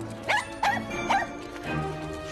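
A dog giving three short, high-pitched barks in quick succession, over background music.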